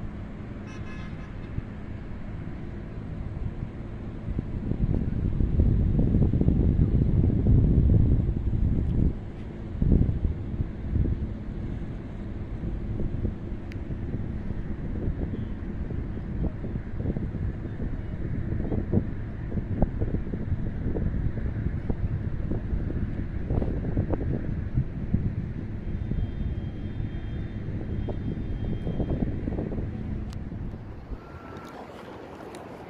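Wind buffeting a phone microphone outdoors, a rough low rumble that surges in a gust about five to nine seconds in. Underneath is the steady hum of city traffic, with a brief horn-like toot right at the start.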